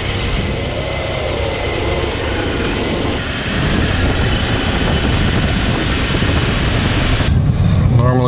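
Tyre and road noise with a rushing rumble from wind, picked up by a camera mounted under the car beside a front wheel while the car drives. The sound's character changes abruptly about three seconds in, turning duller, and again near the end.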